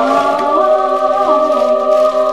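Choral music: several voices holding a sustained chord, with single voices sliding up or down to new notes now and then.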